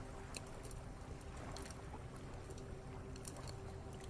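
Gentle lake waves lapping, soft and steady, with faint crackles of a campfire scattered through it and a thin steady tone underneath.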